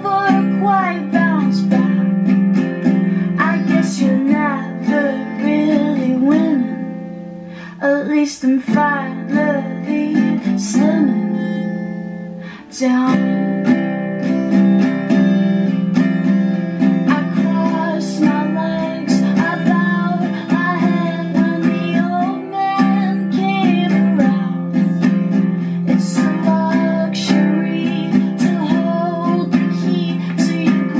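Acoustic guitar strummed while a woman sings over it: a solo live performance of a pop song. The strumming thins out about seven seconds in and again near twelve seconds, then comes back in full about thirteen seconds in.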